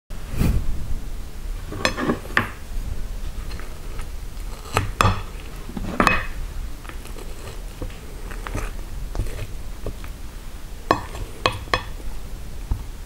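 Wooden fork knocking and scraping against a plate as it cuts into a soft onion omelette, with scattered sharp clicks and a quick cluster of them near the end.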